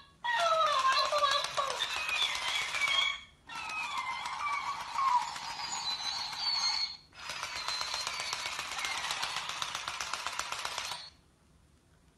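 Walking, talking plush hamster toys: a fast clicking rattle from their motorised walking gears, mixed with a high-pitched voice replaying the recorded words. It comes in three stretches of about three seconds each and stops about a second before the end.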